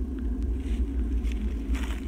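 Wind rumbling on the microphone: a steady low rumble with faint rustles over it.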